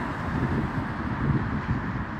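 Low, uneven rumbling outdoor background noise with no distinct events.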